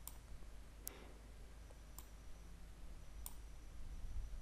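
Computer mouse clicking: four short, sharp clicks spread over a few seconds, faint against a low steady room hum.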